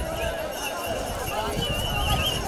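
A voice calling out over an outdoor crowd's noise, with irregular low thuds underneath.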